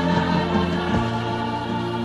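A choir singing sustained notes over instrumental accompaniment in a Neapolitan song, moving to a new chord about a second in.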